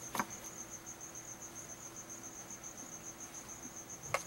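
Steady high-pitched insect chirping, about six pulses a second, with a single sharp knock shortly after the start as an object is set down.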